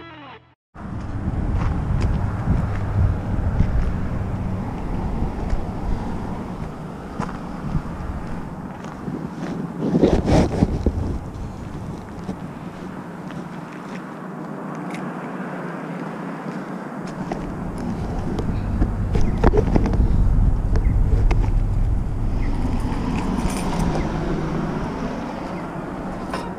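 Outdoor street ambience: a steady low rumble of vehicle traffic begins about a second in, with a few sharp knocks, the loudest about ten seconds in.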